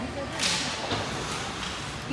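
A short, sharp scrape on the ice of a hockey rink about half a second in, a hissing burst that fades quickly, from the players' skates and sticks working the puck along the boards. Faint voices from the stands underneath.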